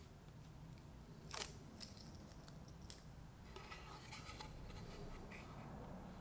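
Faint crinkling and peeling of double-sided tape backing, with light clicks and a short scrape about a second in, as a plywood template is stuck down onto a plastic sheet.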